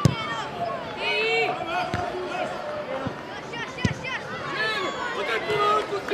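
Football being played, with high-pitched shouts from the players on the pitch and several sharp thuds of the ball being kicked, the loudest about four seconds in.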